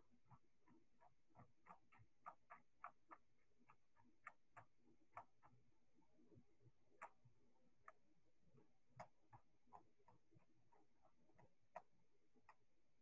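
Near silence with faint, irregular clicks, a few a second, unevenly spaced.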